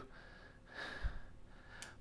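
A quiet intake of breath between phrases, with a faint low bump about halfway and a small click near the end.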